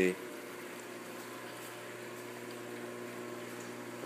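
Steady hum of running aquarium water pumps with a faint bubbling of water.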